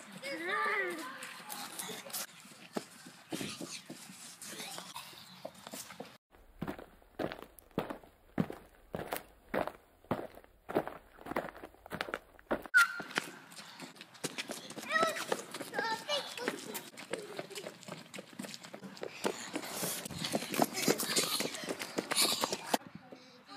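Children's voices outdoors, shouting and calling without clear words, with a steady run of footsteps, about two a second, for several seconds in the middle.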